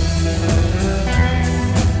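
Live band music: a Stratocaster-style electric guitar playing, backed by a drum kit and a low bass line.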